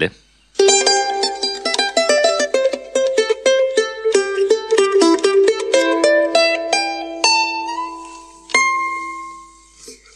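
Plucked-string instrumental introduction: a quick run of picked notes that slows to a few held notes, with a last note near the end left to ring out and fade.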